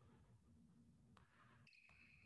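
Near silence: faint room tone with one faint click about a second in and a brief faint high squeak near the end.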